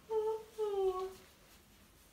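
A person humming two short notes, the second sliding down in pitch.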